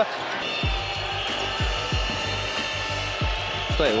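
Arena crowd noise with a steady beat of low drum hits, about three a second, starting just under a second in.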